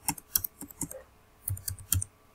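Computer keyboard keys clicking as a password is typed: an uneven run of quick keystrokes, with a brief pause a little after halfway.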